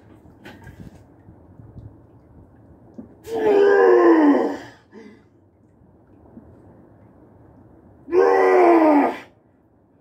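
A man groaning loudly with strain, twice, about five seconds apart, each groan about a second long and falling in pitch at the end: the effort of pressing two heavy reps, a double, on the bench press.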